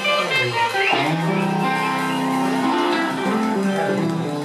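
Electric guitars playing live, held notes over a lower line, with a few notes bent in pitch about a second in.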